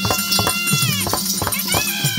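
Therukoothu folk-music accompaniment: a long, high, nasal note holds steady and breaks off about a second in, and a new high note enters near the end. A steady low drone and regular drum strokes run beneath.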